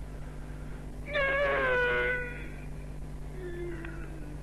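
A single high-pitched, drawn-out vocal cry about a second in, lasting about a second and falling slightly in pitch, heard over a telephone line. A steady low hum lies underneath.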